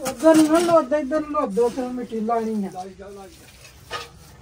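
A person's voice in one long connected phrase, falling in pitch and stopping a little after three seconds in.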